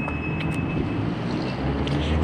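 Steady low mechanical hum of outdoor background noise, growing a little louder near the end.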